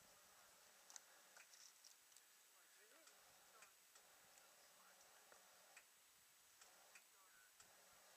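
Near silence, broken by faint, irregular ticks and clicks about a dozen times, with faint distant voices.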